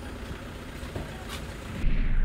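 Steady low outdoor rumble of a street with traffic, with one short click about a second and a half in. Near the end it cuts suddenly to a much louder low rumble.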